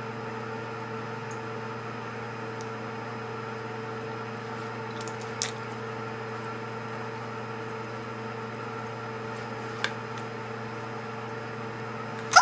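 A steady mechanical hum made of several steady tones, with a light click about five seconds in and another near ten seconds.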